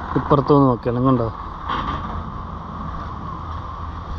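A person's voice speaks briefly for about the first second, then a steady low hum carries on beneath.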